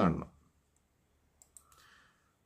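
Two brief, faint computer mouse clicks about a second and a half in, after the tail of a spoken word, with near quiet otherwise.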